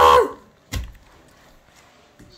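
A child's shout cuts off just after the start, then a single short thump about three quarters of a second in, followed by quiet room tone.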